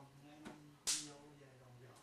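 A sharp skin-on-skin slap about a second in, as bare arms strike and block each other in a martial-arts elbow drill, with a lighter knock about half a second before it.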